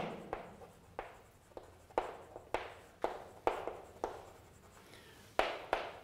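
Chalk writing on a blackboard: a run of short, sharp taps and scratches, about two a second.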